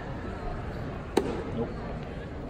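A pitched baseball arriving at home plate, heard as one sharp crack about a second in, over a low background murmur.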